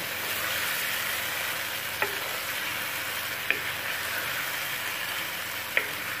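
Sliced eggplant and tomato masala frying in oil in a pan: a steady sizzle, with a spatula knocking against the pan three times while stirring.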